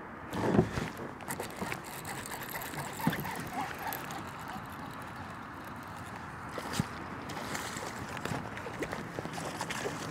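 Water lapping and sloshing around a fishing kayak under a steady background rush, with scattered small clicks and knocks from the rod, reel and hull. A short louder rush about half a second in stands out above the rest.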